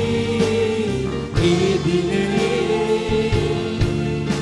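Church worship music: a man singing a Christian hymn into a microphone, backed by keyboard accompaniment with a steady beat.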